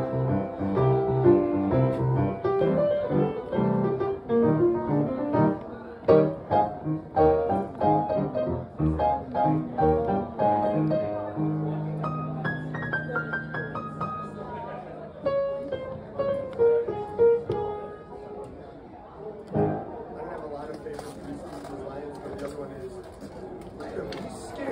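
Acoustic piano played solo: chords and a melody line with a held low chord about halfway through, the playing growing softer in the last several seconds.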